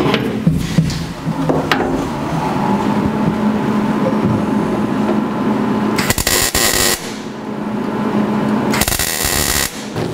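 Welder arc crackling as a cut in a steel bracket is welded up, with two louder bursts: one about six seconds in lasting about a second, and a shorter one near the end. A steady low hum runs underneath.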